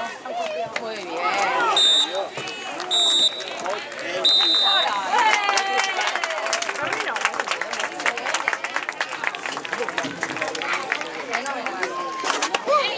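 Referee's whistle blown three times, two short blasts and then a longer one, the signal for full time. Many voices shout throughout, and from about five seconds in there is scattered hand-clapping.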